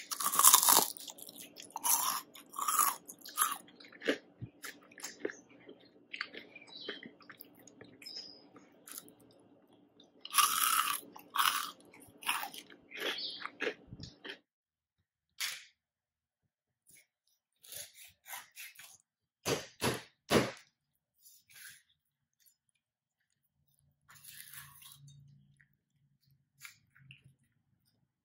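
Close-up biting and chewing of crispy Korean fried chicken in a sweet soy garlic glaze, its potato-flour coating crunching loudly. The crunches come thick and fast through the first half, then turn sparser and more separate before dying away near the end.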